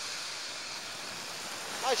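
Small waves washing at the shore of the Río de la Plata, a steady rush of water.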